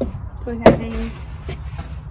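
A single sharp knock, the loudest sound here, as something is set down on a glass tabletop, followed by a fainter tap about a second later.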